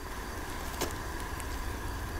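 Steady low background rumble between lines of dialogue, with one faint click a little under a second in.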